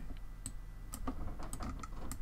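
A handful of light, scattered clicks from a computer mouse and keyboard, over a steady low electrical hum.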